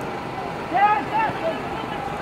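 Football crowd's steady background hubbub, with a raised voice calling out briefly just under a second in.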